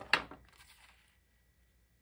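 A single sharp tap just after the start, followed by a brief soft paper slide, as a cardstock panel is set down and handled on a stamping platform.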